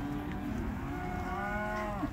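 A cow mooing once, a long call from about half a second in until near the end.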